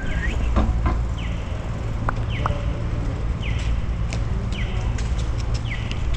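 BMX bike rolling along a paved sidewalk, with a steady low rumble of tyre and wind noise on the mic. A short high chirp repeats about once a second.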